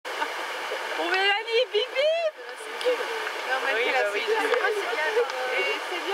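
People's voices calling out and talking, the loudest calls about a second in, over the steady rush of a river rapid.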